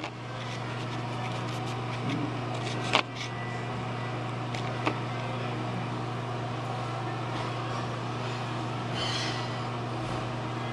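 A steady low mechanical hum, with sharp knocks from the camera being handled and set down: one at the start, a louder one about three seconds in and a smaller one about five seconds in.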